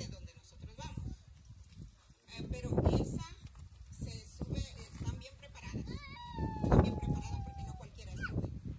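Speech from a person at the podium, heard through loudspeakers. About six seconds in, a high tone starts and holds for about two seconds, sinking slightly in pitch.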